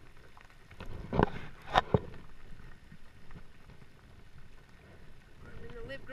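Three sharp knocks against the plastic kayak hull between about one and two seconds in, from the landing net and the netted flathead being handled on board. Under them runs a steady hiss of rain falling on the water.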